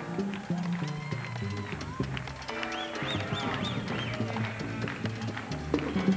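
Live salsa band playing an instrumental passage: an upright bass line, piano and congas with sharp percussion strikes, and a run of high sliding notes near the middle.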